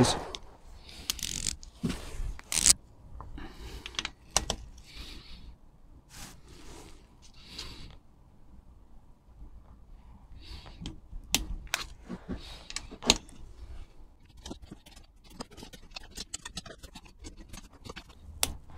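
Ratchet torque wrench set to 10 Nm clicking as crankcase bolts are tightened, with scattered handling rustles and sharp clicks. A fast run of ratchet clicks comes near the end.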